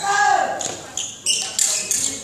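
Court shoes squeaking and scuffing on a hall's court floor during badminton shadow footwork. There are several short, high squeaks, and one in the first half-second slides down in pitch.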